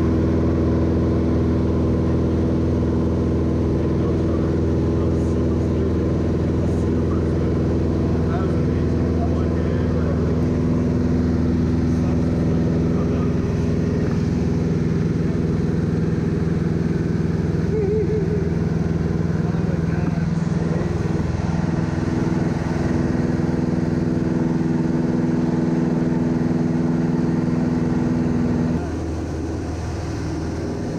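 Single-engine Van's RV light aircraft's piston engine and propeller droning steadily in the cockpit at a constant power setting. Shortly before the end the drone abruptly drops a little in level and its tone shifts.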